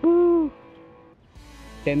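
A single short hoot, rising then falling in pitch, lasting about half a second; after it only faint background music until a man's voice starts near the end.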